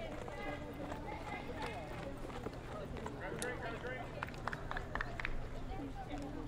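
Indistinct chatter of several people talking at once, with no clear words, over a steady low rumble. A few short, sharp snaps stand out between about four and five seconds in.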